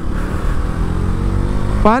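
Motorcycle engine accelerating under the rider, its pitch rising steadily, over a low rumble of wind and road noise.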